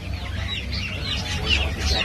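A pen crowded with incubator-hatched local-breed chicks cheeping: many short, high, falling peeps overlapping continuously.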